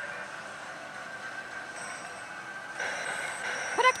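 Pachislot hall din: a steady wash of slot-machine noise with a held high electronic tone. It grows louder and busier about three seconds in as the Another God Hades machine plays a sound effect.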